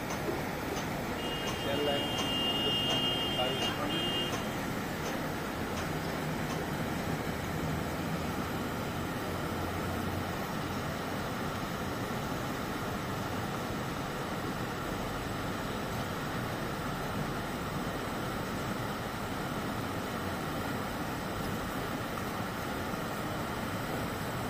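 A swollen, muddy river in flood, its water rushing steadily over rocks and gravel. About a second in, a faint high tone sounds for around three seconds.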